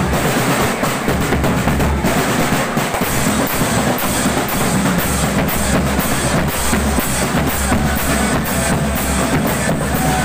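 Marching drum band playing a steady, driving beat: large harness-carried bass drums struck with mallets under sharp, evenly repeated snare and cymbal strokes.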